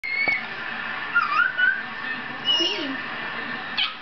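A baby's high-pitched squeals, four short ones that waver up and down in pitch.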